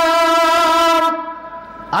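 A man's voice chanting Quranic recitation through a microphone, holding one long, steady note on the vowel of 'yā' (O). The note fades out about halfway through, just before he goes on to the next word.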